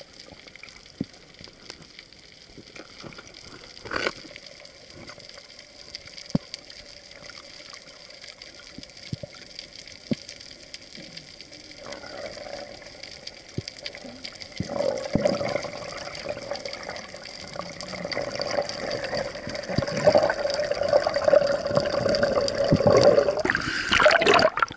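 Muffled underwater water noise heard through an action camera's waterproof housing, with scattered faint clicks and a steady high tone in the first half. It grows steadily louder through the second half, and near the end there is a loud sloshing burst as the camera nears the surface.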